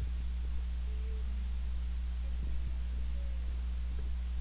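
Steady low electrical hum on the sound system, with a fainter higher hum line above it and nothing else standing out.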